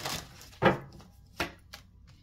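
Tarot cards being handled at a table: a brief swish of cards at the start, then two sharp taps of cards on the tabletop, under a second apart, the first the louder.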